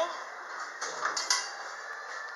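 A few short clicks and knocks, a cluster about a second in and one more near the end, over a steady hiss inside a small elevator car.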